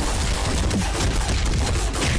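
A fast string of hit and impact sound effects from an animated stick-figure fight.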